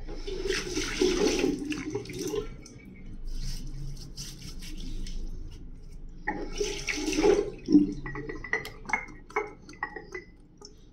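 Wet hands splashing and rubbing water over the face and beard, wetting it before lathering for a shave. There are two longer bursts, one starting at the very beginning and another past the middle, with smaller wet touches between and after.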